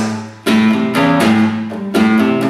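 Classical acoustic guitar playing a rock-and-roll style riff as single notes picked on the low sixth and fifth strings. The notes ring on and change every quarter to half second, with a short dip in the sound just before a sharp new attack about half a second in.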